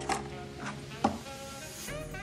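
Background music playing steadily, with three brief taps from paper craft pieces being handled on a table.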